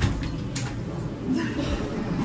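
Indistinct chatter of people's voices, with a light click about half a second in and another soft knock a little past the middle.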